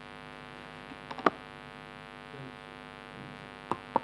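Steady electrical mains hum with a few short clicks, the sharpest a little over a second in and two more near the end.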